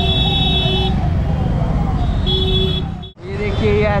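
Police car siren sounding repeated falling sweeps, about two a second, fading away over the first two seconds. Underneath is the steady rumble of road traffic, and a vehicle horn sounds briefly twice.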